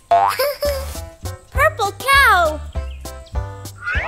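Bouncy children's cartoon background music with a steady low beat, overlaid by a cartoon baby's wordless vocal sounds and bending, boing-like sound effects, with a quick rising slide near the end.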